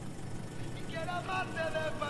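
Steady low rumble of a car cabin with the engine idling, with a faint voice coming in about a second in.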